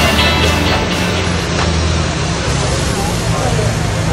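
City street traffic: a steady low engine drone under a dense wash of street noise, with voices mixed in. Background music fades out in the first moments.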